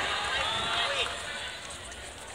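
Indistinct voices and background chatter echoing in a large sports hall, with one short knock about a second in.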